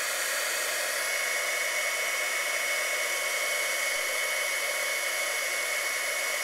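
Handheld embossing heat tool running steadily, its fan noise carrying a constant high whine, as it blows hot air onto a salt, flour and water paste to dry it and make it puff up.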